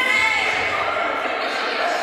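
Speech: a voice speaking in a large, echoing gym hall.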